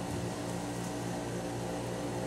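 Steady background hum made of several low held tones over a faint hiss, with no distinct events.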